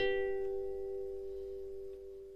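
Background music: a chord strummed on an acoustic plucked string instrument right at the start, then left to ring and fade away slowly.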